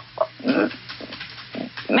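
A woman's short breaths and faint, broken voice sounds in a pause mid-sentence.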